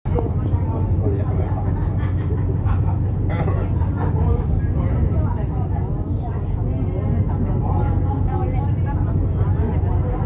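Steady low road rumble inside a moving vehicle's cabin as it drives at speed, with voices chattering over it.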